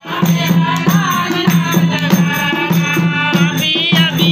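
Group of women singing a Hindu devotional bhajan together, with hand-clapping and a dholak drum keeping a steady rhythm.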